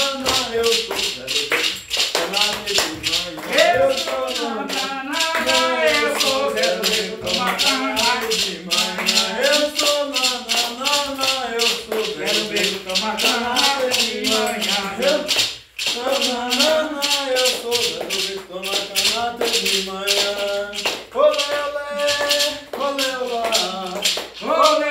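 A sung terreiro chant (ponto), a voice carrying a repeated melody, accompanied by a shaken hand rattle (maracá) that keeps a steady beat. Toward the end the singing moves to longer held notes.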